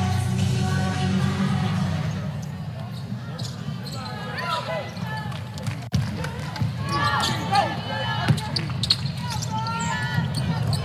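A basketball being dribbled on a hardwood court, with sharp bounces in the second half. It sits under arena music in the first couple of seconds and raised voices from players and crowd.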